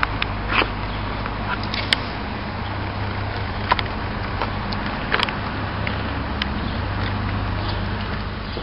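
Steady low hum of a motor vehicle engine running nearby, with a few short sharp clicks scattered through it.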